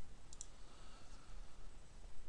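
Faint clicks of a computer mouse button, a quick pair about half a second in, over low background noise.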